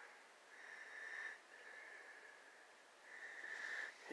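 Faint breathing of the person holding the camera, three soft hissy breaths of about a second each.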